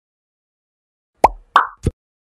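Three short popping sound effects in quick succession, the first sliding down in pitch and the last lower.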